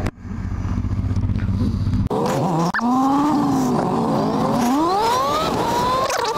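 Honda Hornet inline-four motorcycle engine idling, then, after a cut about two seconds in, revving hard as the bike pulls away and accelerates. The pitch climbs, drops back at gear changes and climbs again.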